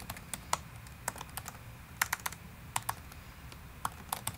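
Typing on a computer keyboard: a quick, irregular run of sharp key clicks as a line of code is entered.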